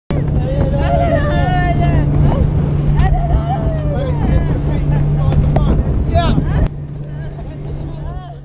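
A boat engine running steadily with wind noise on the microphone, and voices calling out over it from people packed into an inflatable dinghy alongside. About two-thirds of the way through the sound drops suddenly to a quieter level, the engine hum and a voice still there.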